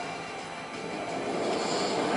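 Soundtrack of the Red Bull space-jump video playing over a conference room's speakers: a steady, noisy rumble in a lull between voices.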